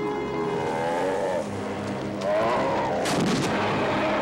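King Kong's roar from the 1976 film: a rough, bending animal bellow that grows louder about two seconds in.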